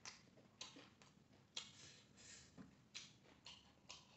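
Faint chewing and mouth sounds while eating by hand: a string of short, crisp clicks and smacks, roughly every half second.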